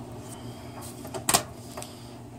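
A few light clicks and knocks from the air purifier's mounting plate being handled against the sheet-metal duct, the loudest about a second and a half in, over a steady low hum.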